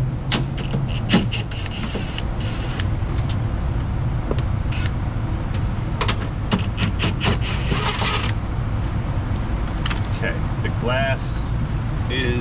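Cordless drill/driver backing out the bolts that hold a power-window regulator to the door glass, with two short runs of the tool about a second and a half in and again near eight seconds. Between the runs are light metallic clicks and knocks from the tool and bolts in the door, over a steady low hum.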